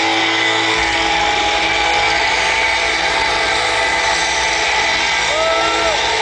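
Live rock band holding a loud distorted electric-guitar chord, with bent notes rising and falling near the end.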